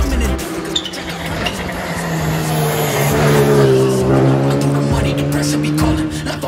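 A rally car's engine at speed, its note climbing for a few seconds, peaking, then dropping away as the car goes by.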